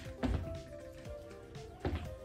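Two landing thuds of sneakered feet on a wooden floor from frog jumps, about a second and a half apart, over steady background music.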